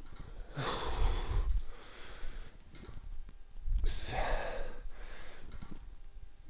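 A man breathing hard with exertion during suspension-strap rollouts: two heavy, breathy exhales a few seconds apart, the second with a counted rep spoken over it.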